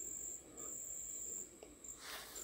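A faint, steady, high-pitched tone that drops out briefly a couple of times, over low background hiss.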